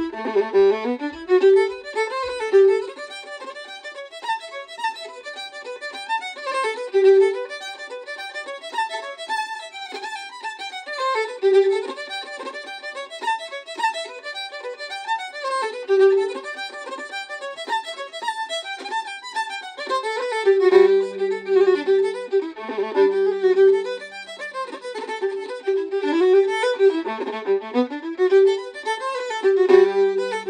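Solo fiddle playing a traditional Irish reel at a brisk, even pace, with a recurring held note sounding under the running melody and a few low held notes about two-thirds of the way through.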